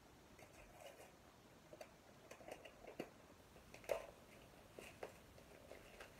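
Faint handling noises of a package being opened by hand: scattered soft rustles and small clicks, the sharpest about four seconds in.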